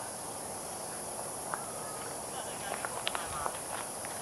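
Steady high-pitched drone of insects, with a few short, faint chirps and ticks in the second half.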